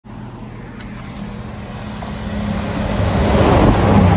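East Midlands Railway Class 222 Meridian diesel express train approaching and passing at speed. Its engine hum and rushing wheel and air noise grow steadily louder through the second half, peaking at the end as it goes by.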